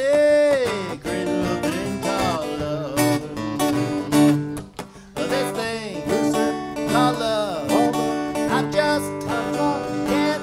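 Live acoustic duo music: two acoustic guitars strumming a rockabilly rhythm, with a melody line over them that slides and bends in pitch, opening with a long note that glides downward.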